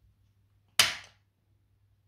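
Activator chiropractic adjusting instrument firing once about a second in: a single sharp click as it delivers its thrust onto the atlas vertebra, on its lowest force setting.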